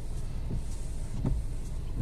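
Steady low hum of a Hyundai HB20 1.0 heard from inside the cabin: engine and running noise at low speed, with the air conditioning on.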